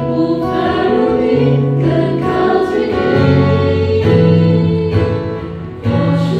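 A small mixed choir singing a Chinese-language worship song together, one singer leading on a microphone, over instrumental accompaniment with steady sustained bass notes. A phrase ends with a short dip in loudness near the end.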